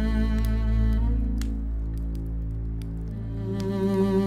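Slow background score of sustained bowed-string notes over a low steady drone. The held notes change about a second in and again after three seconds.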